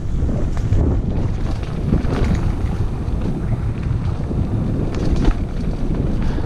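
Wind buffeting the microphone of a mountain biker's camera, with the low rumble of the bike's tyres rolling over a dirt singletrack and scattered clicks and rattles from the bike.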